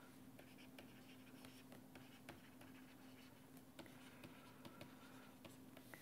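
Faint taps and scratches of a stylus writing on a tablet screen, with a steady low hum underneath.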